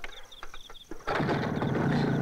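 Motorcycle engine starting about a second in and then running steadily.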